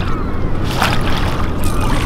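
Water splashing about a second in and again near the end, as a hooked walleye is netted at the side of the boat, over the steady low hum of the boat's motor.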